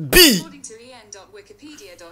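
A person's voice: one short, loud vocal sound falling in pitch at the start, then low, quiet speech.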